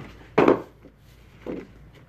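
Paper and board being handled on a paper cutter's bed: a loud short scuff about half a second in and a softer one about a second and a half in.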